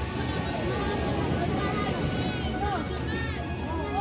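Voices of people on a beach calling out at a distance, in short rising and falling cries, over a steady low rumble, with faint music.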